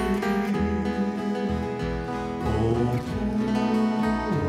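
Live Hawaiian string-band music: acoustic and twelve-string guitars strummed over a steady pulse of plucked upright bass notes.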